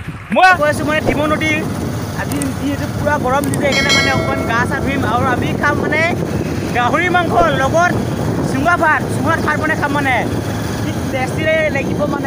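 A young man talking excitedly over the steady running of a motorcycle, with wind noise on the microphone as the bike rides along.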